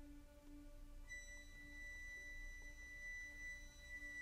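Very quiet orchestral music: a low held note fades away, and about a second in a high, pure sustained note enters and holds steady.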